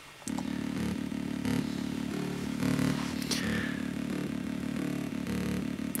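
Korg Volca Bass synthesizer playing a simple repeating bass-note pattern through a DIY one-transistor resonant low-pass filter, starting about a quarter second in. The sound is muffled, with its highs cut and most of it in the low end.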